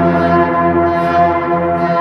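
A yaybahar being bowed: one sustained drone with many overtones, ringing and echoing through the instrument's coiled springs and frame drums, with a deep low tone that swells slowly.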